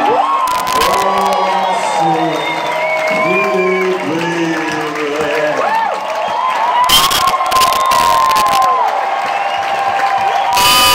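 Large concert crowd cheering just after a song ends, with shrill whoops and whistles rising and falling through the noise. A few sharp cracks stand out, the strongest about seven seconds in.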